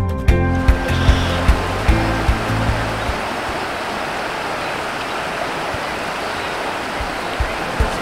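Rushing water of shallow river rapids: a steady, even hiss. Background music with a beat fades out over the first three seconds, leaving only the water until music comes back in at the very end.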